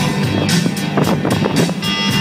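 Music playing on a car radio inside the moving car's cabin, over the car's road noise.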